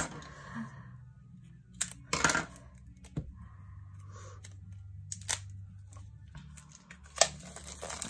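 Fingers and nails picking and scratching at a sticker seal on a small cardboard card box, with a few short scratches, taps and small tearing sounds spread out over several seconds, over a faint steady low hum.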